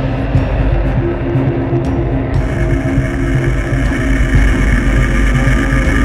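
Jet fighter engine running loud and steady, mixed with background music; the sound changes texture about two and a half seconds in.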